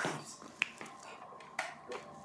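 Two sharp clicks about a second apart as a studio floor lamp is handled to switch it off.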